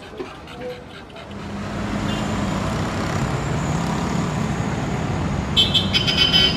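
Close roadside traffic: motor-vehicle engine and road noise rise sharply about a second in and then hold steady. A short horn beep sounds near the end.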